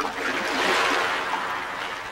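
Rushing water: a hiss that swells within the first second and then slowly fades.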